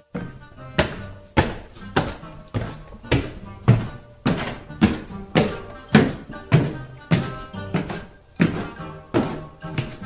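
Sound effect of heavy footsteps climbing stairs: a slow, even series of thuds, about one every half second or so.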